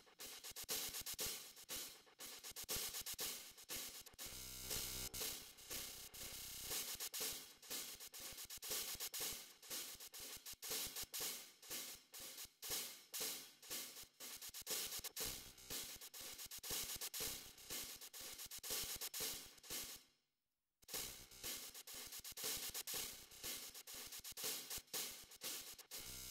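Simple programmed drum-kit loop with hi-hats and cymbals, played through a delay plugin whose sequencer keeps stepping the delay time, feedback and filter, giving dense, quickly repeating hits that shift as it goes. The sound drops out for about a second near the end.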